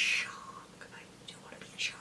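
Speech only: a woman's voice drawing out the word 'shark' with a whispery hiss, then a short pause.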